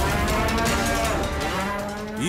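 A bull bellowing, one long call whose pitch wavers, over dramatic background music.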